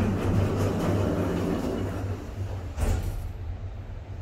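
Otis passenger lift running with its car doors opening: a steady low hum under a rushing mechanical noise that fades over the first couple of seconds, then a single clunk a little before the end.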